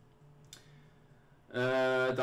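A single sharp click about half a second in, against quiet room tone with a faint low hum; a man's voice comes in with a held sound about a second and a half in.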